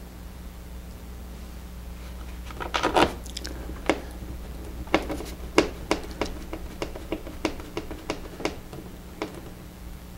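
Hand screwdriver driving a small wing screw into a plastic receiver: a run of short, sharp clicks, a few a second, starting about three seconds in and stopping near the end.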